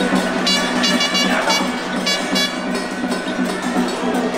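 Dense temple-festival din of crowd noise and processional music around a lion dance, with a quick run of short, high-pitched honking blasts in the first half.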